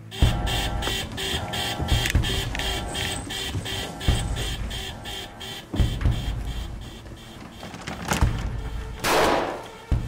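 Tense film-score music: a rapid ticking pulse over held tones, with deep low hits every couple of seconds and a loud whoosh about nine seconds in.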